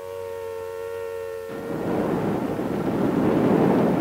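A held musical chord ends about a second and a half in, giving way to the rumbling roar of a London Underground train, building in loudness.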